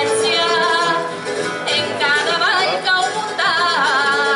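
Live jota music: a solo voice singing a jota with a wavering, ornamented vibrato over plucked-string accompaniment.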